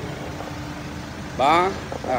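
Engine of a 2009 Hyundai Starex van idling with a steady low hum.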